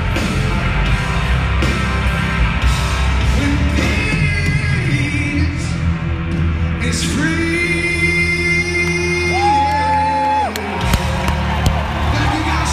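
Live hard-rock band with singing and crowd yells in a large arena hall. A long held note steps up in pitch about two-thirds of the way through, then the band's low end cuts out near the end, leaving scattered drum hits and crowd noise.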